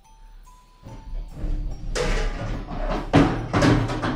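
Scuffling and rustling of clothing and body movement with a few knocks as a person struggles awkwardly, beginning about a second in and loudest near the end, over quiet background music.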